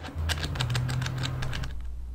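A quick, irregular run of light clicks and rattles for about a second and a half, then it stops, leaving a steady low hum.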